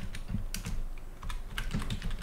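Typing on a computer keyboard: a run of separate key clicks at an uneven pace.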